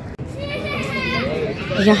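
A child's high voice calls out for about a second over steady background noise, and a woman begins speaking just before the end.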